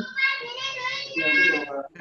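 A high voice singing in long held notes, with a short break near the end.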